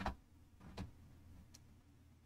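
Clicks at a computer desk: two sharp clicks about three-quarters of a second apart, the first the loudest, then a fainter, lighter tick a little past halfway.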